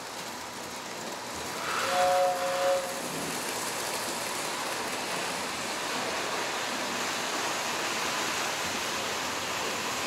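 Lionel electric model trains running on metal track, a steady rolling hiss and rumble. About two seconds in, a short two-tone horn blast sounds for under a second.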